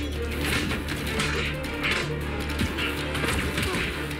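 TV drama fight-scene soundtrack: a sustained low music score under several sharp hits and swishes from a stick fight.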